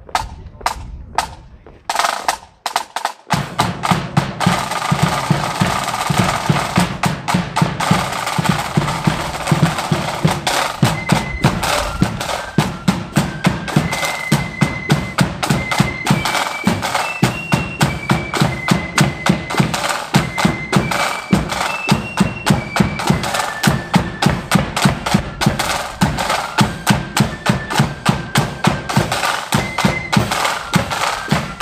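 Marching flute band striking up: a few drum taps, then a snare drum roll about two seconds in, the bass drum joining a second later, and the flutes taking up the tune about ten seconds in over a steady marching beat.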